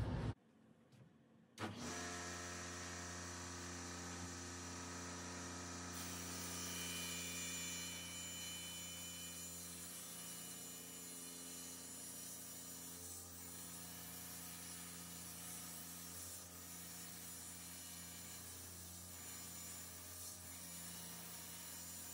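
Table saw motor running steadily as a long ash board is ripped along the fence; it starts suddenly about two seconds in, after a short silence.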